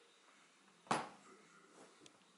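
A single sharp tap or knock from a hand handling the drone remote controller and its mounted tablet, about halfway through, against faint room tone.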